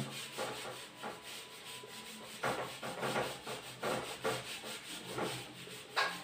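A hand wiping dry-erase marker writing off a whiteboard: a series of short rubbing strokes of palm on the board's surface, coming closer together in the second half.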